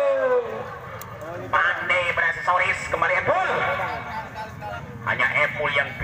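A man's voice speaking in short bursts, separated by pauses of a second or two.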